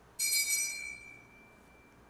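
An altar bell is struck once and gives one clear, high ring that fades away over about a second and a half. It marks the consecration of the chalice at Mass.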